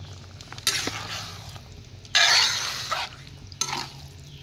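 Wooden spoon stirring a thick soya bean and tomato stew in a large aluminium pot: three wet, scraping strokes, the loudest about two seconds in.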